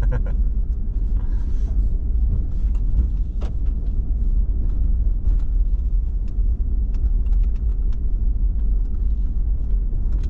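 Steady low rumble of a Ford Raptor pickup driving at low speed along a lane, heard from inside the cab, with scattered faint ticks.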